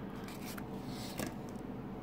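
Faint handling noise of a clear plastic coin capsule on its cardboard backing, fingers rubbing and pressing the plastic, with a couple of light clicks about half a second and a little over a second in.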